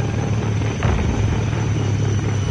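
Helicopter in flight: a steady low rumble of rotor and engine.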